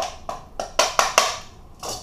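A metal fork clinking against a metal mixing bowl, about seven quick, uneven taps, while onion rings are tossed in flour.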